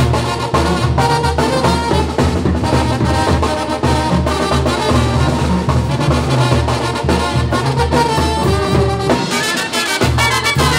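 Mexican banda (brass band) playing an instrumental son live: trumpets and trombones carrying the melody with clarinets, over a pulsing sousaphone bass line and drums. The bass drops out briefly near the end.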